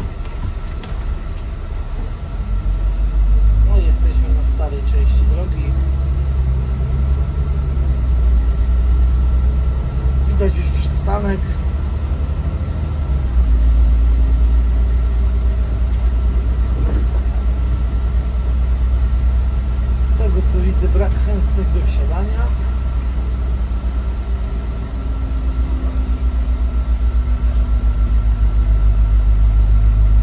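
Autosan Sancity M12LF city bus on the move, heard from the driver's cab: a steady low engine and road rumble with a thin constant whine. The engine note rises and falls a little as the bus speeds up and slows.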